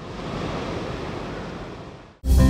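Sea surf breaking and washing onto a sandy beach: a steady rushing of waves that eases slightly toward the end.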